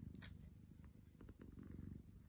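Long-haired cat purring softly while it sleeps, a faint fast low rumble, with a light click near the start and a few faint ticks about a second in.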